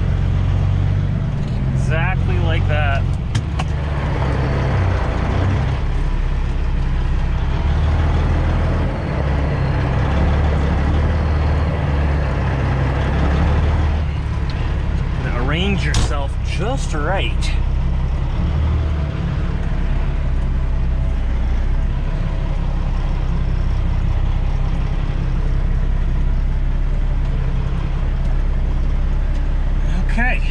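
Semi truck's diesel engine running steadily at low speed, heard from inside the cab while the rig is manoeuvred slowly.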